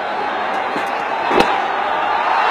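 A cricket bat striking the ball once, a single sharp crack about a second and a half in, over steady crowd noise that grows a little louder after the shot.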